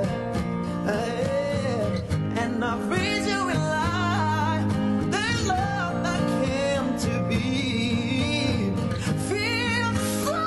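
A male voice sings with wavering vibrato and held notes, accompanied by a plucked electric-acoustic guitar.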